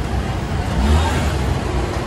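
Street traffic: a passing vehicle's engine rumble, swelling about a second in, over a steady road din.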